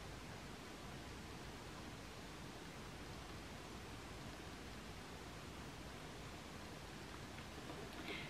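Faint steady hiss of room tone and microphone noise, with no distinct sound standing out.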